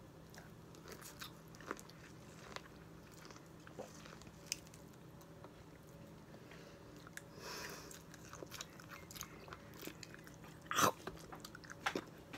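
A person biting into and chewing raw lemon and lime wedges: small, wet clicks and smacks of the mouth. There is a brief louder burst about 11 seconds in.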